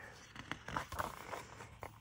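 Paper pages of a softcover photo book being turned by hand, faint rustling with a few small ticks.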